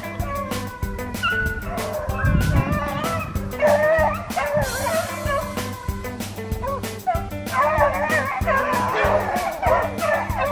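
Beagles baying on a hare's trail, their wavering voices swelling about four seconds in and again from about seven and a half seconds, heard under background music with a steady beat.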